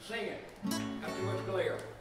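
Acoustic guitar strummed once about two-thirds of a second in, the chord left ringing, with brief talking at the start.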